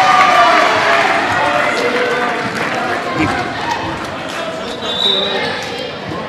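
Gymnasium crowd noise between rallies: many spectators and players calling out and talking over one another, dying down over a few seconds, with a single thud about three seconds in.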